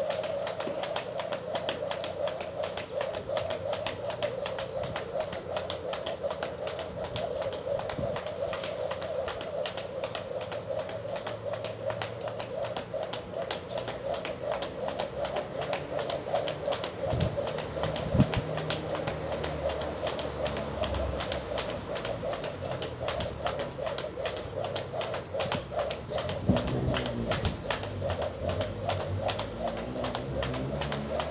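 Skipping rope slapping the ground in a steady quick rhythm, a few times a second, as someone skips continuously, with a couple of heavier thumps partway through.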